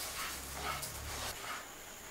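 Wooden spatula stirring dry moong and masoor dal around a non-stick kadai: a soft rustling scrape of lentil grains over the pan, with a low hum underneath that fades out about a second and a half in.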